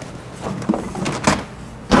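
Refrigerator door opened and contents moved about inside: a few scattered knocks and thumps, the sharpest near the end.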